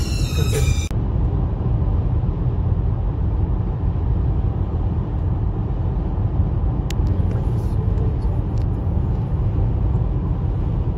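Music cuts off about a second in, leaving the steady low rumble of a car driving at motorway speed, heard inside the cabin: tyre and road noise with the engine under it. A faint click comes about seven seconds in.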